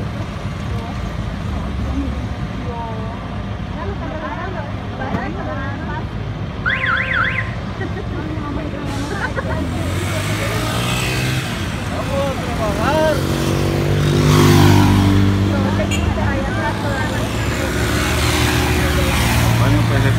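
Roadside traffic noise from a stopped queue of vehicles. From about 12 to 16 seconds in, a motor vehicle's engine revs up and moves off, the loudest part. About seven seconds in there is a brief high warbling chirp, like a car alarm's.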